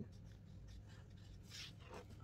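Faint scratching of a black felt-tip marker being drawn across paper, with the clearest stroke about one and a half seconds in.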